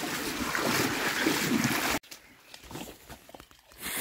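Steady rushing water noise of a small boat moving along a flooded reed channel, cut off suddenly about halfway through. After that only faint scattered sounds.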